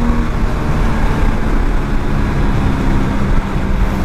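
Heavy wind rush on the microphone over the single-cylinder engine of a big-bore (230 cc) Hero XPulse, running steadily near top speed at about 120 km/h.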